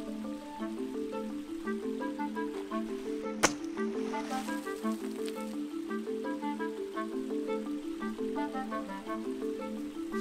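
Light background music of short repeated notes, with a single sharp crack about three and a half seconds in as a golf club strikes a ball lying in shallow water, followed by about a second of splashing spray.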